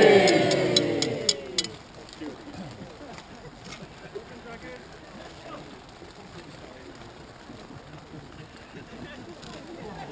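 A loud cry of voices falling in pitch and fading away over the first second and a half, with about six sharp taps in quick succession. After that only a low, steady background of the gathered crowd.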